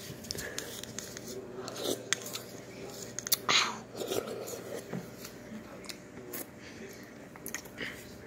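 Quiet room with scattered light clicks and rustles as a hand-held phone is moved about, a slightly louder scrape or rustle about three and a half seconds in, and a faint murmured voice.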